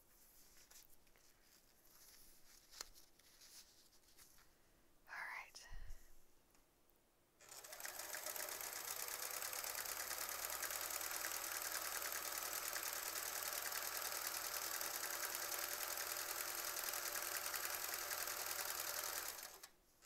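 Sewing machine running steadily at speed, stitching free-motion quilting. It starts about seven seconds in, after a quiet stretch, and stops abruptly just before the end.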